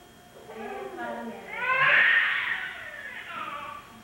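An infant crying: one loud wail that rises about a second and a half in, then tails off, with a quieter adult voice before it.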